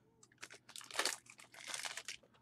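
Soft rustling and crinkling of trading cards and their plastic sleeves being handled. It comes as a series of short scratchy rustles, loudest about a second in.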